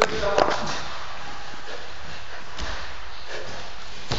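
A thud of wrestlers' bodies hitting the mat right at the start, with a brief scuffle and a short vocal sound, then only steady room noise.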